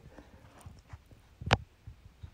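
A single short, sharp click about one and a half seconds in, against quiet room tone.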